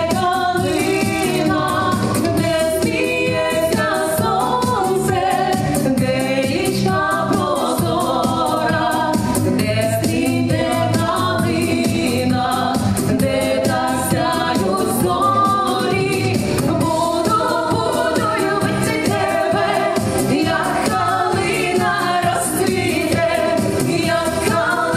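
Two women singing a song together into handheld microphones, amplified, over accompaniment with a steady beat.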